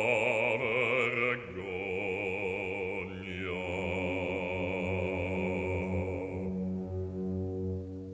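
Operatic bass voice holding a long note with wide vibrato over sustained orchestral chords. The voice dies away about halfway through, leaving the orchestra's low strings holding steady.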